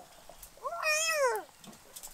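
A baby's single drawn-out squeal, lasting about a second, that rises and then falls in pitch.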